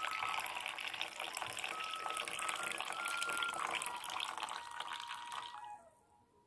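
Coffee poured in a thin stream from a jebena into a small ceramic cup, a steady trickling fill that stops just before the end.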